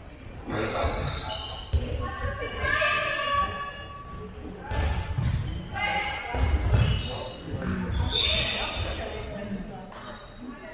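A handball bouncing on a sports-hall floor, with thuds of play and players' high shouted calls, heard in a large hall.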